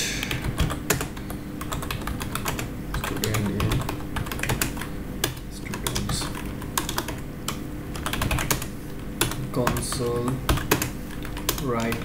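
Computer keyboard typing: a quick, irregular run of key clicks as lines of code are entered, over a steady low hum.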